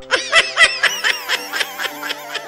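Cartoon character's high-pitched giggling, a quick run of laugh pulses at about four a second.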